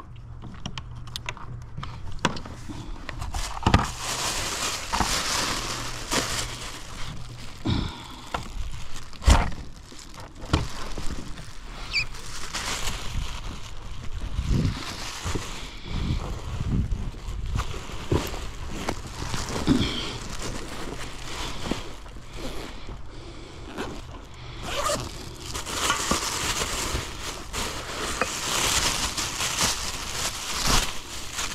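Water lapping and sloshing against a plastic kayak hull, with irregular knocks and scrapes from gear on board. Near the end, a plastic bag rustles.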